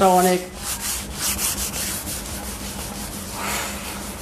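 A steady, scratchy hiss of noise with a faint low hum, after the tail of a spoken word at the start.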